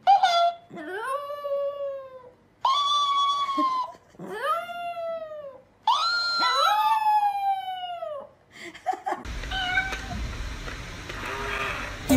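Chihuahua howling: about five long, high-pitched howls in a row, each rising and then sliding down in pitch. About nine seconds in, the howls stop and a noisier, unrelated background sound takes over.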